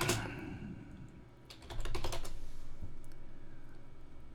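Typing on a computer keyboard: a quick run of keystrokes about one and a half seconds in, then a few scattered, fainter taps.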